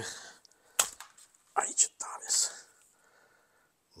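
A few sharp small plastic clicks, one about a second in and two close together just after halfway, as the nozzle of a tube of refractory sealant is worked open with a knife, with a brief muttered "nu".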